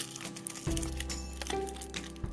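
Soft background music with held notes, and the crinkling and crackling of a foil wrapper being peeled off a chocolate ball.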